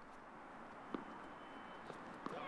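Quiet outdoor court ambience with a single short knock of a tennis ball about a second in, and a fainter tap near the end.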